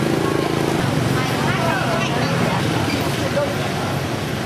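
Busy street sound: motor scooter and traffic engines running, with people talking nearby. A close engine drone stands out for about the first second.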